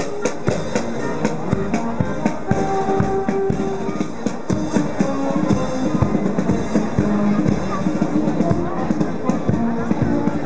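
Marching brass band playing, with held horn notes over a steady bass drum beat.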